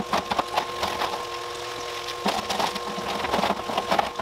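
Loose lava rock clattering and scraping as it is spread by hand inside a plastic barrel, with irregular clicks throughout, over a steady hum.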